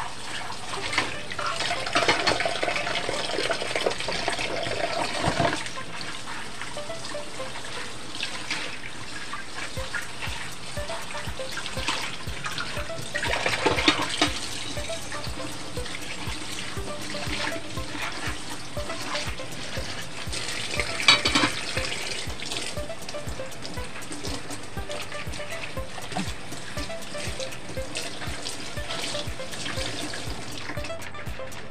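Tap water running into a stainless steel sink as dishes are rinsed by gloved hands. There are louder stretches of splashing and handling, with sharp knocks of crockery near the middle and again about two-thirds of the way through.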